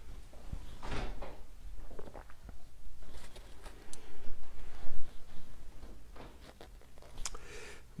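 Scattered light clicks and knocks of objects being handled, with a louder cluster of knocks about four to five seconds in.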